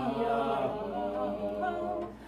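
Small mixed a cappella vocal ensemble singing unaccompanied, several voices holding sustained notes together in a slowly moving chord.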